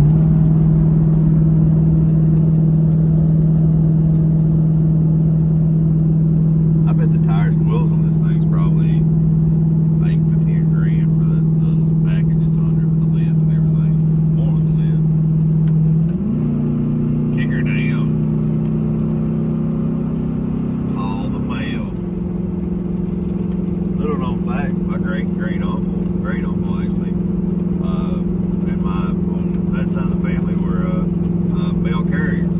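Inside the cab of a 2003 Hummer H2, its 6.0-litre LS V8 drones steadily at highway cruise. About 16 seconds in, the engine note steps up in pitch and holds for about six seconds, then drops back down.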